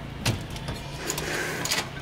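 A panelled door being pushed open: a knock about a quarter second in, then a cluster of clicks and rattles from the latch and handle near the end, over a low steady hum.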